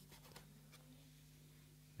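Near silence: a few faint, soft strokes of a knife slicing cooked beef on a plastic cutting board, over a low steady hum.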